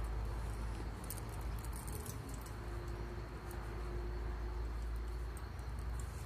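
Soft rustling and small clicks of cotton macramé cord being wound by hand round a bundle of cords, busiest in the first half, over a steady low background rumble.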